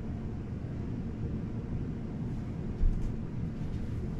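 Steady low rumble of background room noise, with one dull thump a little under three seconds in.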